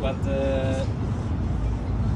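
A man's voice says a drawn-out "but" in the first second, then breaks off. Under it and after it there is a steady low rumble of city street noise.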